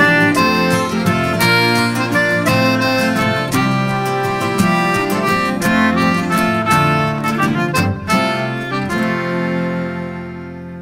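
An Irish folk band plays the instrumental ending of a song, with a reedy lead melody over rhythmic strumming. The final chord lands about nine seconds in and rings on, starting to fade at the very end.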